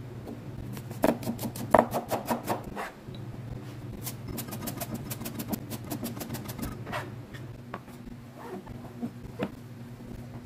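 Chinese cleaver chopping on a plastic cutting board, over a steady low hum. A run of quick strokes comes about a second in, then an even, faster run from about four to seven seconds, then a few scattered cuts.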